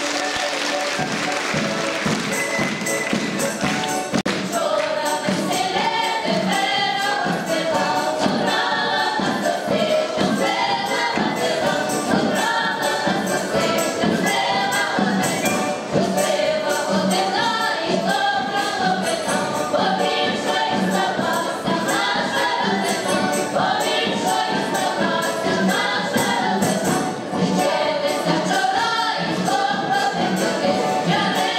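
A large mixed folk choir of Ukrainian village singers singing a folk song together in full voice, over a steady beat.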